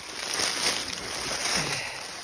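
Dry leaf litter rustling and crunching underfoot as someone steps through it, in a steady run of noise through the whole stretch.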